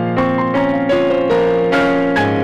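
Yamaha electronic keyboard played with a piano sound: a melody of notes struck about every half second, each ringing on over held lower notes.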